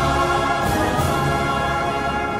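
Soundtrack music: a choir singing sustained chords.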